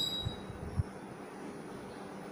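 Marker pen writing on paper pinned to a board, with a few faint low knocks as the pen and hand press on the board, the loudest about three quarters of a second in.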